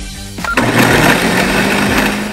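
Countertop blender motor starting about half a second in and running steadily, chopping whole tomatoes into a pulp for sauce.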